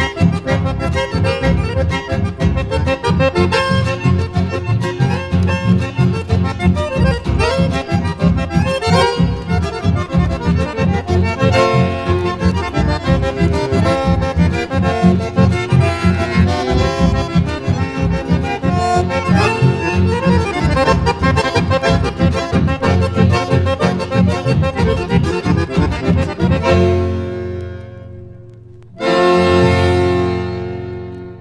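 Instrumental chamamé passage led by accordion over a steady, regular low rhythm. It fades out about three seconds before the end, and a new piece begins abruptly with a held chord about a second before the end.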